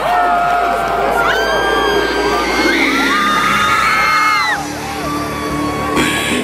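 Large concert crowd screaming and cheering, many voices whooping and sliding up and down in pitch. About four seconds in, a pulsing amplified music intro starts underneath.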